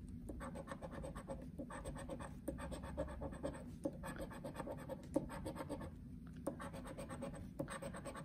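A coin scraping the coating off a paper scratch-off lottery ticket, in short runs of quick strokes with brief pauses between them.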